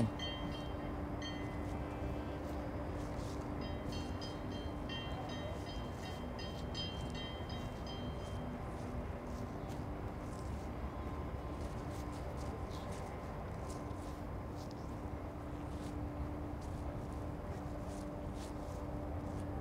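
Steady low rumble of distant urban traffic with a faint constant hum, and short repeated high-pitched notes during the first half.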